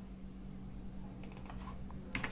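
Faint computer keyboard keystrokes, a few clicks in the second half, over a steady low electrical hum.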